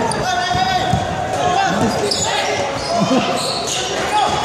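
Indoor basketball play on a hardwood gym floor, echoing in a large hall: the ball bouncing, sneakers squeaking, and players' voices. Short, high squeaks cluster in the second half.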